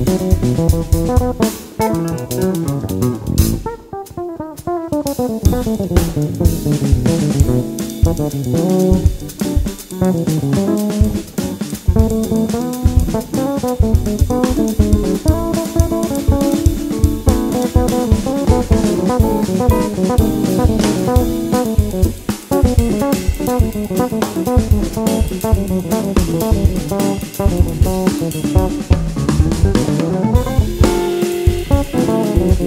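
Instrumental samba jazz played live by a quartet: a drum kit keeps a busy samba groove under electric bass, hollow-body electric guitar and piano. Quick melodic runs rise and fall throughout.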